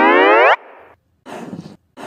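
Cartoon sound effect for an animated end card: a loud rising pitched glide lasting about half a second, then a brief quieter hiss. Short rough puffs follow, one starting a little over a second in and another at the very end.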